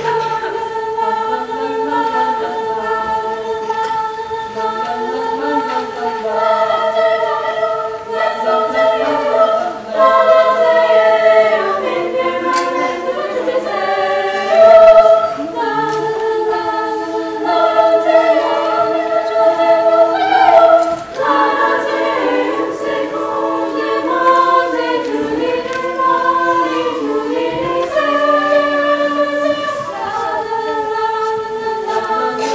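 A high school women's choir singing held, slowly shifting chords in several parts.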